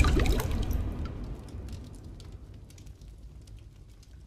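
Cinematic logo-sting sound effect: a loud impact hit right at the start, followed by a glittering tail of small high ticks that fades away over about three seconds.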